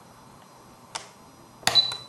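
Click of a Spektrum DX7se radio transmitter's power switch about a second in, then another click and a short high beep near the end as the transmitter powers back on.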